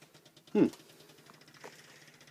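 A man's short, falling "hmm". Otherwise the sound is quiet, with a faint steady hum and a few faint ticks.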